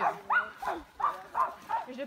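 A dog giving a handful of short, high-pitched yips and whines, spaced a few tenths of a second apart.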